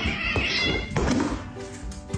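A cat calling out twice during a scuffle between two cats, a higher cry in the first second and a louder, rougher one about a second in, over background music.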